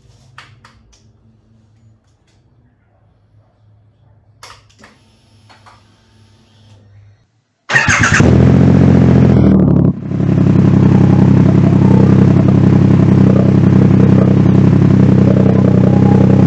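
A Triumph Rocket 3R's 2.5-litre three-cylinder engine, its stock exhaust modified by Meerkat and its intake removed, starts about eight seconds in and then idles loudly and steadily. Before it starts there are only a few faint clicks and a low hum.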